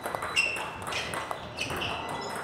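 Celluloid-type table tennis balls ticking off bats and bouncing on the table in a multiball backhand drive drill: a quick run of sharp clicks and pings, several to the second.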